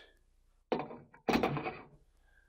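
CNC-machined 6061 aluminium toolhead being pushed into the slots of a Dillon 550B reloading press frame, metal knocking on metal: a short knock a little under a second in, then a louder thunk as the plate goes in.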